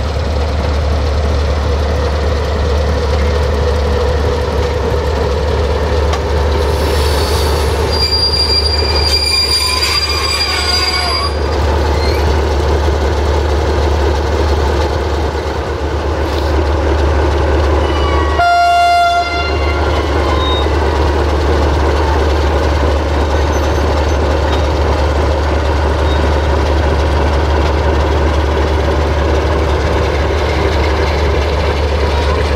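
Diesel-hauled passenger train moving through a station, with a steady low engine drone throughout. A high-pitched wheel squeal lasts a few seconds about a quarter of the way in, and a short high horn blast sounds a little past halfway.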